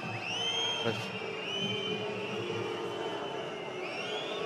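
Football stadium crowd noise with many overlapping whistles from the stands, sliding up and down in pitch over a steady crowd hum.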